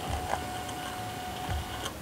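Small handheld ink-free label maker printing a label: its feed motor gives a steady whine as the tape advances, stopping just before the end.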